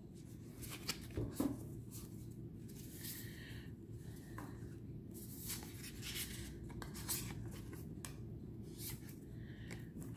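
Lemurian Starchild Oracle cards being handled, sliding and flicking against one another as they are shifted in the hand. There are scattered soft rustles and light taps, faint throughout, with a small cluster about a second in.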